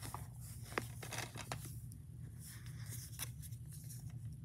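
Faint handling noise as a plastic DVD case is turned over on carpet: a few light clicks and rustles over a steady low hum.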